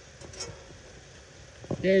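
Quiet background with a faint, brief rustle near the start, then a man's voice begins near the end.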